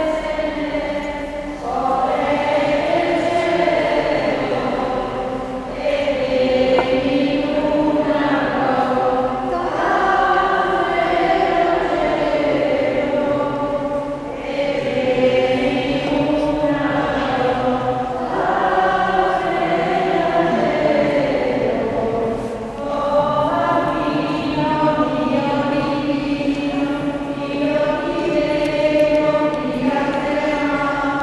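Voices singing a hymn together in long held phrases, with short breaks between them. This is the closing hymn that follows the final blessing of a Catholic Mass.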